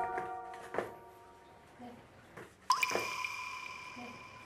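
Variety-show editing sound effects: a mallet-percussion run rings out and fades over the first second. About three quarters of the way in, a sudden bright ringing tone starts and holds.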